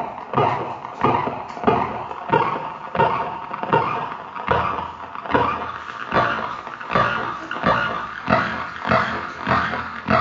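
A person's heartbeat picked up by an ECG amplifier and turned into sound: a regular beat, a little faster than one a second, each beat a sharp pulse with a short growly tail.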